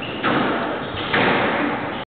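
Squash ball being struck and hitting the court walls during a rally: two sharp impacts about a second apart, each ringing on in the court's echo.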